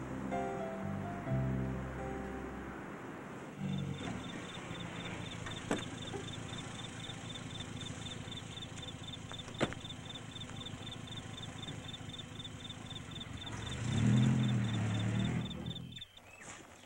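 Film music fades out in the first few seconds. Then a small open-top sports car's engine idles under a fast, steady high cricket chirp, with two sharp knocks from the car's door. Near the end the engine swells as the car pulls away.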